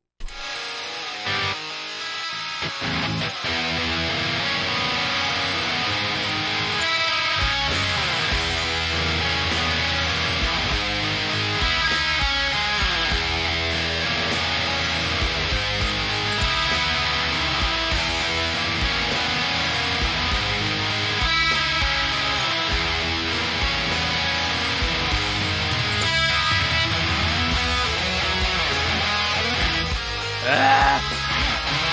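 Distorted electric guitar picking black metal riffs, with a full band track of bass and drums that comes in heavily about seven seconds in.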